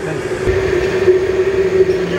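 Steady roar of a high-pressure commercial kitchen burner firing under a large iron kadai, with a constant mid-pitched hum.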